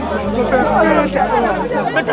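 Voices of a street crowd talking over one another, with a steady low hum underneath.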